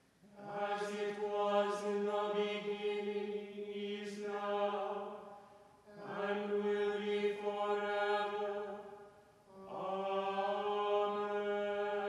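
Evensong plainsong chant: words sung on one held reciting note, in three phrases with short breaks between them. Each phrase dies away slowly in the church's reverberation.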